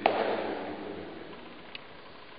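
A single sharp smack at the very start, dying away over about a second, then steady room tone with one faint tick near the end.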